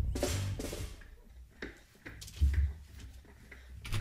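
A Tejano band's song dying away at its close, followed by a few separate drum and bass hits with short gaps between them.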